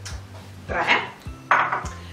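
A small ceramic bowl with a utensil in it set down on a kitchen counter: two clattering knocks a little under a second apart, the second sharper, over faint background music.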